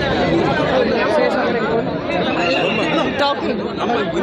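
Overlapping voices of a crowd: several people talking at once in a dense press scrum, with no other sound standing out.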